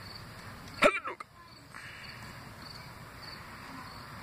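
Crickets chirping in a steady, evenly repeating pattern, with one brief loud voice about a second in.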